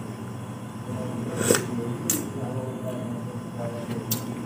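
A spoonful of broth being tasted: quiet eating sounds with two sharp clicks, about a second and a half and two seconds in.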